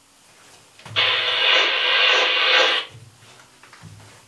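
Handheld two-way radio giving a loud burst of static for about two seconds, starting suddenly and cutting off.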